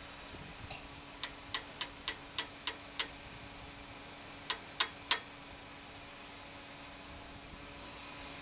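A run of sharp, short clicks, about three a second: eight in a row, a pause of about a second and a half, then three more, the last the loudest, over a faint steady hum.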